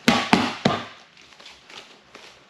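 Boxing gloves hitting focus pads three times in quick succession, about a third of a second apart, as a punch combination is caught on the mitts. A few faint light taps follow.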